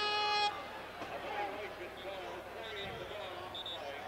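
A basketball arena's scorer's horn, one steady electric tone signalling a substitution, cuts off about half a second in. Then crowd murmur fills the arena.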